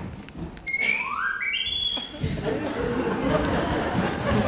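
A whistle blown in a quick series of short rising notes, climbing higher step by step, about a second in. A busy, noisy stretch with thuds follows from about halfway through.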